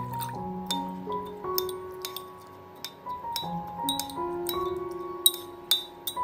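Soft background piano music, over which a steel spoon clinks repeatedly against a ceramic bowl while stirring dal in rinse water; the sharpest clink comes about five seconds in.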